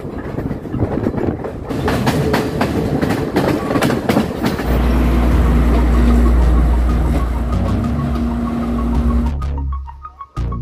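Diesel passenger train: wheels clattering over the rails with sharp clicks at first, then the deep steady rumble and hum of the diesel engine as the train stands at the station. It cuts off suddenly near the end.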